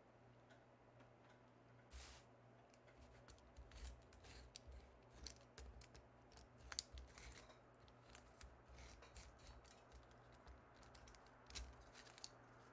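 Faint, irregular snips of scissors cutting paper, mixed with light rustling as sheets of paper are handled and pressed on a table.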